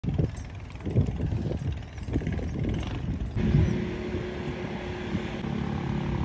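An engine running, heard first as a rough, uneven low rumble, then from about three and a half seconds in as a steadier low hum.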